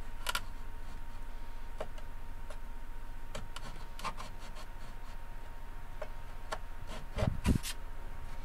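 Sparse, irregular light ticks from hand-tool work on a thin wooden guitar back, then two dull knocks near the end as a chisel is set down on the workbench.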